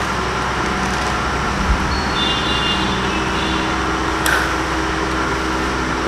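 Steady rushing background noise with a low hum, and a single short click about four seconds in.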